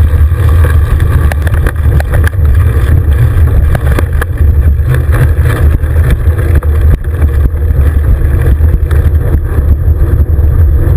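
Wind buffeting the microphone of a handlebar-mounted action camera on a moving bicycle: a loud, steady low rumble, with scattered clicks and rattles from the bike.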